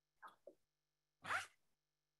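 Near silence on a video-call audio line, broken by two faint ticks in the first half second and one short noise a little past halfway.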